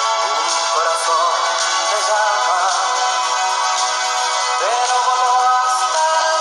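A man singing a slow ballad, holding long notes with vibrato over a band accompaniment, with a new phrase swooping in a little before the fifth second. The sound is thin, with no bass.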